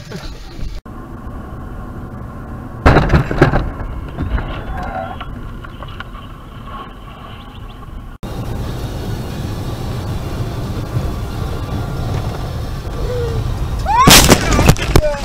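Car driving noise from dashcam recordings: a steady low road rumble, broken by a loud, sudden burst of noise about three seconds in. The rumble is stronger and hissier in the last part, as on a wet, slushy road.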